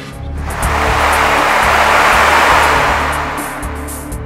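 Dramatic background score with a low pulsing bass, under a swelling whoosh of noise that builds for about two seconds and then fades away.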